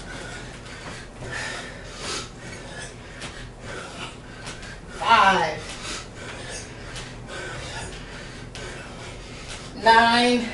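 Heavy, uneven breathing from two people doing continuous bodyweight squats, with one short voiced call about five seconds in.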